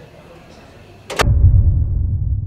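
A sharp whooshing crack about a second in, then a deep boom that rumbles on and slowly fades: a dramatic impact sound effect.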